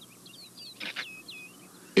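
Small birds chirping: a quick series of short, high chirps over a faint hiss, with two brief louder noises about a second in.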